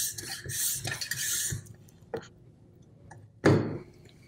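Plastic pump cap of a Chapin Tri-Lock sprayer being twisted in the tank neck: a rasping rub of plastic on plastic for about the first second and a half, then a small click and, near the end, a sharp knock.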